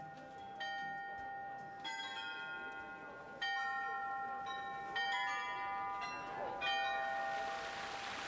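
Bells of the Olomouc astronomical clock chiming a slow tune: pitched strikes about every second and a half, each note ringing on into the next.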